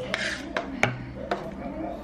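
Three sharp knocks of kitchen utensils on a hard surface, spread over about a second and a half, as vegetables are being prepared.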